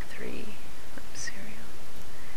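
A woman speaking very softly, close to a whisper, reading out digits as she types them, over a steady hiss. There is one faint click about a second in.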